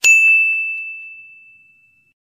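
A "correct answer" quiz-show sound effect: a single bright, high ding that strikes sharply and fades out over about a second and a half, signalling a right answer.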